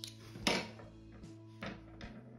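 A single sharp snip about half a second in, with a fainter click near the end: scissors cutting the yarn. Soft background music runs underneath.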